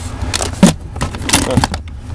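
Several sharp plastic clicks and knocks with some scraping as a plastic game controller is handled and its thumbstick pushed, over a steady low hum.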